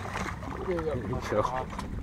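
Excited voices over the steady low hum of a fishing boat's idling engine.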